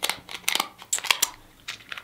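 Kitchen shears working on a king crab leg shell: a string of sharp clicks and crackles, with a short pause a little past halfway.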